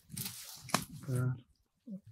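Dry totora reed stalks rustling as they are grasped and pulled, with one sharp snap just under a second in, followed by a short vocal sound.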